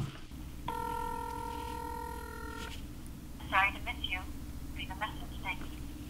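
Ringback tone from the tiny speaker of a Zanco Tiny T1 phone during an outgoing call: one steady ring about two seconds long. A few seconds in, a thin, tinny voice comes from the phone as the call goes to voicemail.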